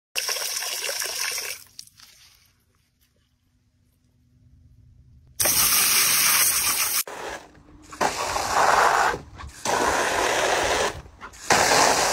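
Garden hose spray nozzle jetting water in about five hissing bursts that stop and start, with a near-silent gap of about three seconds after the first burst.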